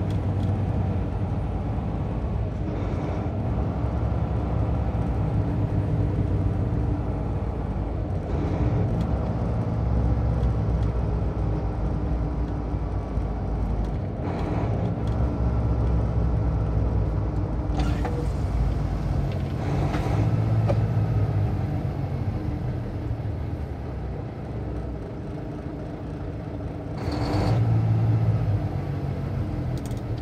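Steady engine and tyre rumble heard from inside a moving vehicle on a highway. It eases a little as the vehicle slows for a stop, and a brief louder burst comes near the end.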